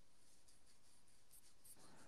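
Near silence: faint room tone and line hiss.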